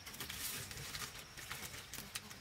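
Kindling catching in the firebox of a wood-burning brick-and-cement stove: irregular crackles and small pops over a soft hiss.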